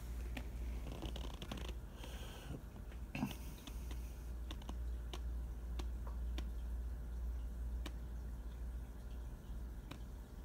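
A steady low hum, with scattered sharp clicks and ticks throughout and some rustling noise between about one and three seconds in.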